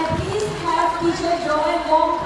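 A person talking, mostly speech, after the dance music has stopped, with a brief low thump right at the start.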